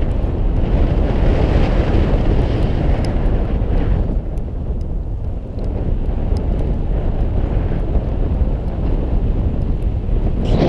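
Wind buffeting a GoPro camera's microphone: a loud, steady, deep rumble that eases slightly around the middle.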